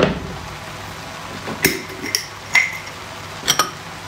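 A glass clip-top jar being picked up and handled, with a handful of sharp clinks from glass and its metal clasp.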